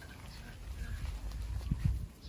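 Shih Tzu puppies playing and scuffling on grass: a few faint short squeaks over a low rumble, with soft thuds growing in the second half.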